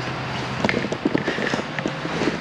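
Footsteps with irregular clicking and clattering handling noise close to the microphone, over a steady background of outdoor traffic; the clicks start about half a second in.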